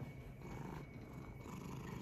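British shorthair cat purring steadily, with a sharp tap right at the end.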